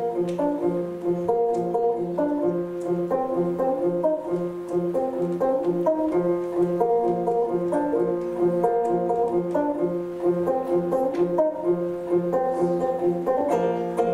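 Khakass khomys, a long-necked plucked lute, played solo: a low note plucked over and over in an even rhythm under a melody of plucked higher notes.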